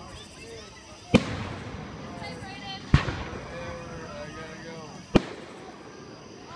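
Aerial firework shells bursting in the sky: three sharp bangs about two seconds apart, each trailing off in an echo.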